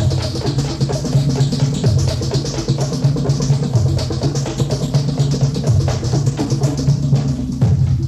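Drum-led accompaniment music for a traditional East Javanese dance, with dense, steady percussion strokes over a low pitched line.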